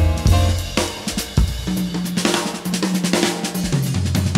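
A live jazz combo plays, with a grand piano and a drum kit. The drums are prominent and busy with cymbals, and they grow into a dense cymbal wash over a held low note in the second half.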